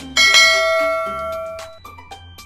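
A subscribe-button sound effect: a click, then a single bright bell ding that rings out and fades over about a second and a half, over background music.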